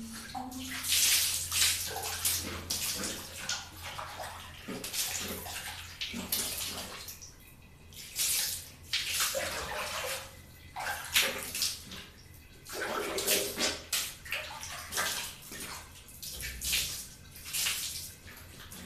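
Water scooped with a plastic dipper and poured over long hair, splashing down in a string of irregularly spaced pours, about ten in all.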